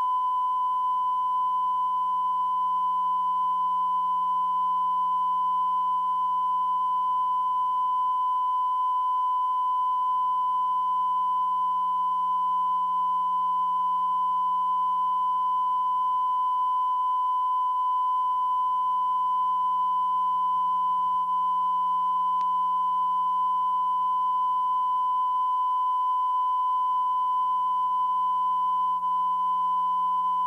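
A steady, high-pitched test tone: one unbroken pitch held without change, over faint hiss.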